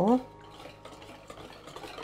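A wire whisk stirring a thin, wet fermented barley-rice mash in a bowl: a soft, wet swishing with faint ticks of the wires. This is the mash being mixed with added water for barley gochujang.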